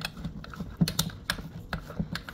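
Irregular clicks and taps of a personal blender's blade base being fitted and twisted onto its cup, which will not tighten. No motor running.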